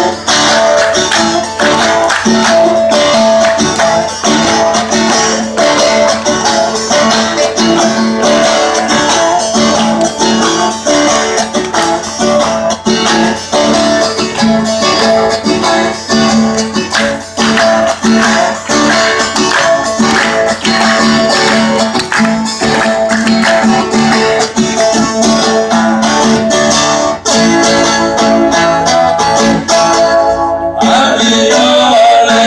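Live sertanejo band playing an instrumental passage, led by strummed acoustic guitar over a steady rhythm, loud through a PA system.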